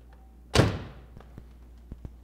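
The driver's door of a 1993 Chevrolet Corvette convertible being shut by hand: one solid thunk about half a second in, followed by a few faint ticks.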